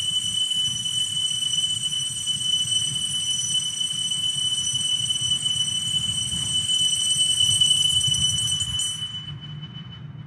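Consecration bell ringing at the elevation of the host: one high, ringing metallic tone held steady for about nine seconds, fading away near the end.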